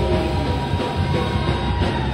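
Live rock band playing loud and distorted through a PA, with held guitar notes over a dense, rumbling low end.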